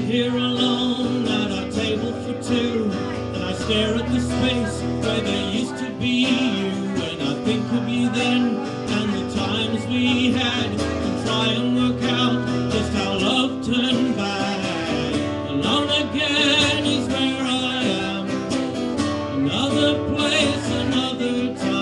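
Acoustic guitar strummed steadily as accompaniment in a live song performance.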